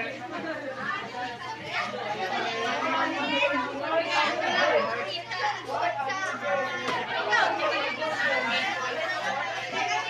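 A roomful of students talking at once: indistinct overlapping chatter, with a steady low hum underneath.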